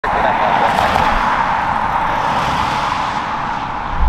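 Steady noise from an Airbus A320's twin jet engines on final approach. Its high hiss eases off about halfway through.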